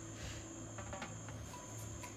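Onion bajji (battered fritters) deep-frying in hot oil in a steel kadai: a steady soft sizzle with scattered small crackles. A thin, steady high tone runs behind it.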